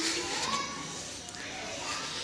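Faint, indistinct chatter of people's voices, some sounding like children.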